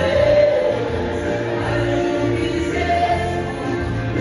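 A song: a man singing over band accompaniment.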